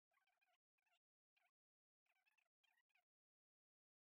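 Near silence, with only very faint, short, chirpy bursts that stop about three seconds in.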